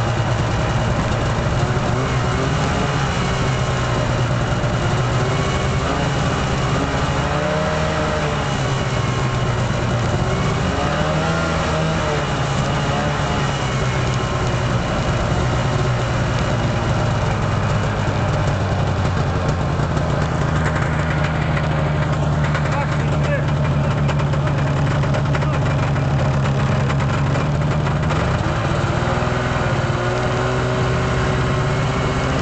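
Arctic Cat snowmobile engine running steadily under way, heard from on the moving sled, getting a little stronger in the second half.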